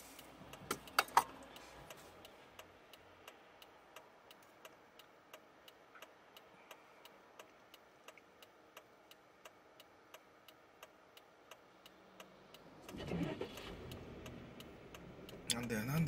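A car's turn-signal indicator ticking steadily inside the cabin, a little over two ticks a second, while the car waits at a red light. Near the end a louder low rumble of the car and road comes in.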